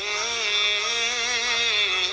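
Urdu manqabat, a Shia devotional song: a male voice sings a long, wavering held note, with a lower voice held beneath it for most of the time.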